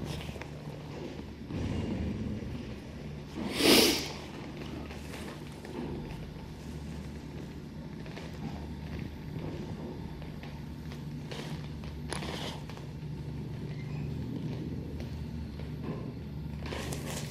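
A low, steady machine hum, with a short rushing noise about four seconds in and a few fainter ones later.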